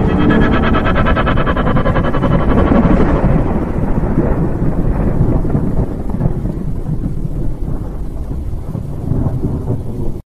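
Thunder-storm rumble sound effect, loud and deep, with a fast crackling layered over it for the first three seconds, then the rumble slowly dies away.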